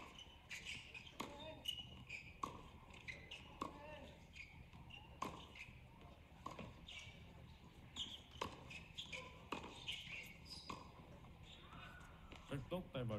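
Faint tennis ball impacts on a hard court, a sharp pop every second or so as the ball is struck and bounces, with short high chirps in between.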